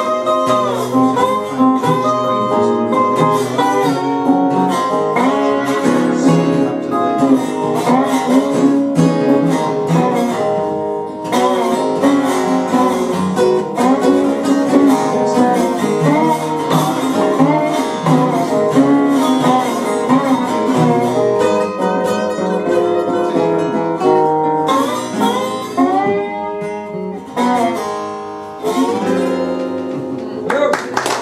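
Small acoustic string band playing an instrumental tune on acoustic guitars and a resonator instrument, the melody line bending and sliding between notes. The tune winds down and ends near the end.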